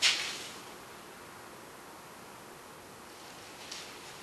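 Faint, steady room hiss in a quiet workshop, opened by one sharp knock that dies away quickly, with a light click near the end.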